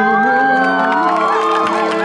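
Live pop band of keyboard, electric guitars and drums holding sustained chords, with the audience whooping and cheering over the music.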